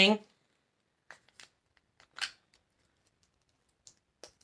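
A few faint, short plastic clicks and rustles from a face ice roller being handled and opened, the clearest about two seconds in.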